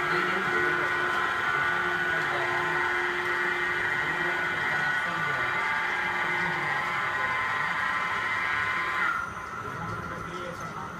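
Mattress tape edge machine running on test: a steady motor whine made of several high tones, which cuts off about nine seconds in.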